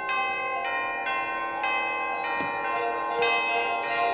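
Concert band playing a quiet passage led by ringing bell tones, a new note about every half second, over sustained wind chords.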